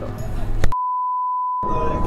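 A single steady, pure electronic beep, about a second and a half long, starting with a click. For most of its length all other sound is cut out, like an edited-in bleep.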